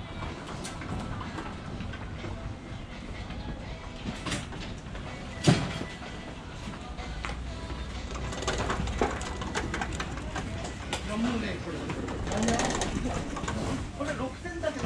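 Indoor market hall ambience: a steady low hum with distant voices and scattered light clatter. One sharp knock, the loudest sound, comes about five and a half seconds in.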